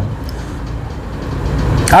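A pause in a man's speech filled by a steady low background rumble; his voice starts again near the end.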